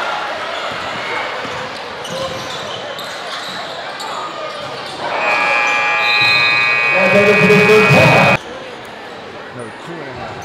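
Basketball game in a gym: crowd voices, a ball bouncing and sneaker squeaks. About five seconds in, a loud steady horn sounds for about three seconds and stops abruptly, and the court sounds that follow are quieter.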